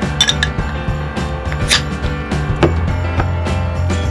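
Background music with a steady bass line. Just after the start comes a quick cluster of sharp metallic clinks as brass knuckles pry the crown cap off a glass beer bottle, then a couple more single clinks.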